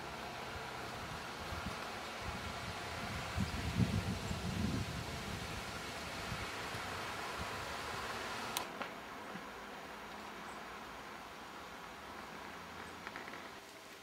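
Faint outdoor ambience: a steady hiss, with low rumbling noise on the microphone between about three and five seconds in, and a single sharp click a little past halfway.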